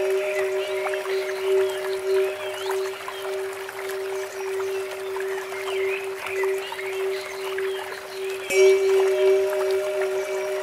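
Relaxation music: a steady drone tone holds throughout, and a Tibetan bell is struck once, about 8.5 seconds in, and rings on. Under it, birds chirp and water trickles from a bamboo fountain.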